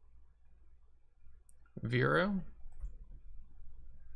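Light clicks from a computer keyboard and mouse as a new stock ticker is entered into trading software.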